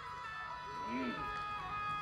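Harmonium playing soft, sustained notes, the melody stepping from one held note to the next.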